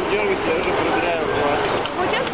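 People talking in a street crowd, voices overlapping, over a steady background of street noise.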